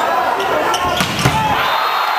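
Men's volleyball rally in a gymnasium: two sharp hits on the ball about a second in, over the steady voices of the crowd in the hall.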